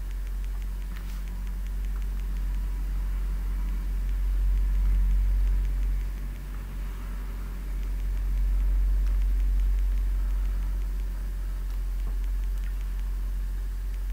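A steady low hum, swelling slightly twice, with faint scratching of a pen ruling straight lines on paper.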